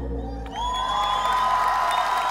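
Concert crowd cheering and whooping as a song ends, the band's last low note dying away in the first half second. About half a second in, rising whoops break out and turn into long held cheers over scattered applause.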